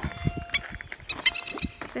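Masked lapwings calling: a few short, sharp high calls in quick succession, over low knocks of the camera being handled.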